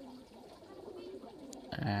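Faint, low wavering cooing of a bird in the background. A man's voice starts near the end.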